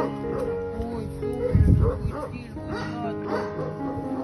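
Background music with sustained notes, and a dog giving a deep bark about a second and a half in, the loudest sound.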